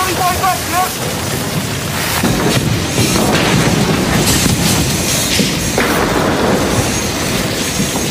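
A brief shout, then from about two seconds in a loud rumbling roar of a large building fire, with crashes of falling burning debris.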